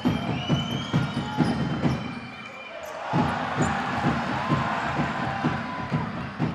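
Basketball bouncing on a hardwood court with short, sharp knocks during live play, and shoes squeaking on the floor. Arena crowd noise grows louder from about halfway through.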